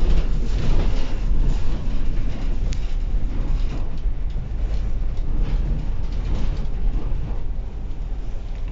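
Ride noise inside a MAN DL 09 double-decker city bus on the move, heard from the upper deck: a deep, steady engine and road rumble with scattered rattles and knocks from the bodywork, easing off slightly near the end.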